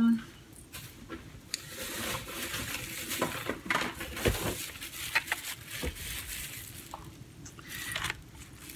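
Rustling and scattered clicks and taps of store packaging being handled while rummaging for the next item. The rustling is strongest in the first half, with sharp clicks spread through it.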